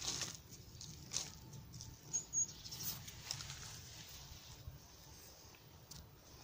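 Hands crumbling loose, damp potting soil into a small plastic flower pot and pressing it around a cutting: soft rustling with a few sharper scratchy crackles, the strongest near the start and about a second and two and a half seconds in.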